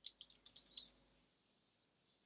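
Faint computer keyboard typing: a quick run of soft key clicks in the first second.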